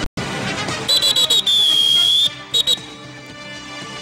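A whistle blown in about four quick short blasts, then one long blast of nearly a second, then two more quick blasts, over soft background music.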